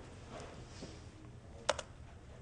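Quiet room tone, then near the end two sharp clicks in quick succession: a key or button pressed to advance a presentation slide.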